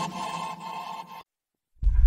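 Background dance music fading out, a brief moment of complete silence about a second in, then a new music track starting near the end.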